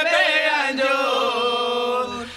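Male voice chanting a line of a Chhattisgarhi Panthi devotional song. The pitch wavers at first, then settles into one long held note.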